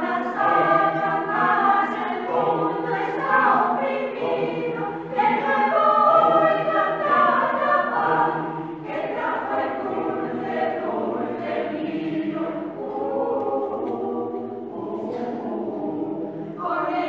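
Mixed choir of men's and women's voices singing unaccompanied in sustained chords, loudest about six seconds in and softer in the second half.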